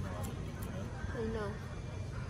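Store ambience: a steady low hum with brief faint voices near the start and again about a second in.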